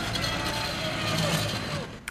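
Electric power wheelchairs driving across a gym floor, a steady motor whir with some faint rising and falling tones in a reverberant hall, fading out near the end.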